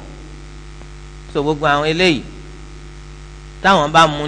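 Steady low electrical mains hum in the microphone's sound system, heard plainly in the pauses, with a short spoken phrase breaking through about a second and a half in.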